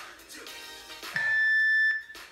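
Workout interval timer giving one long, steady, high beep about a second in, cutting off sharply: the signal that the work interval has ended. Background music plays under it.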